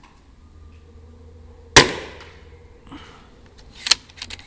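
A Daystate Alpha Wolf .22 (5.5 mm) pre-charged pneumatic air rifle fires once, about two seconds in: a single sharp report with a short ringing tail. Near the end come a few quick sharp clicks as the rifle's action is cycled.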